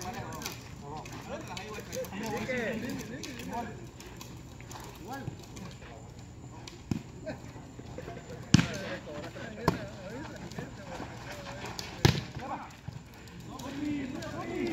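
A volleyball struck by hands and forearms during a rally: four sharp slaps over the second half, the two loudest about eight and a half and twelve seconds in. Players' and onlookers' voices call out throughout.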